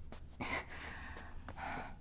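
A woman's soft breaths in a quiet room: a short one about half a second in and a longer one near the end.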